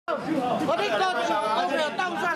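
Several people talking over one another, with members of the public calling out '當選, 當選' ('get elected!') to a campaigning candidate.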